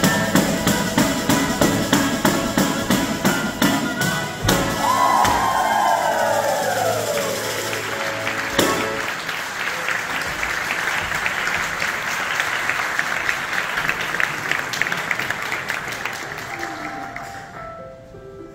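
Southern Italian folk dance music with a fast tambourine beat and a long descending note, ending on a final hit about eight and a half seconds in. An audience then applauds in a large hall, and the applause fades near the end.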